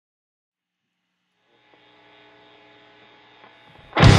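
Silence, then a faint steady hum with a fixed pitch fading in about halfway through and slowly growing, before loud rock music comes in at the very end.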